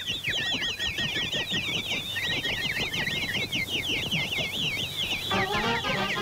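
Cartoon bluebird sound effects: a dense chatter of many rapid, high, overlapping chirps and twitters. A little after five seconds in, the orchestral score comes back in.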